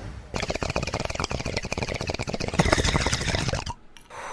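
Dense crackling noise made of many rapid, irregular clicks. It starts just after the beginning and cuts off suddenly shortly before the end.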